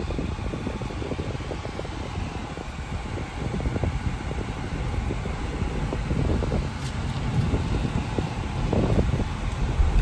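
Steady rumble and hiss inside a moving car's cabin, with the ventilation fan running.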